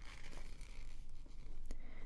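Fingertips sliding and brushing over a glossy magazine page, making a soft paper rustle, with one light click near the end.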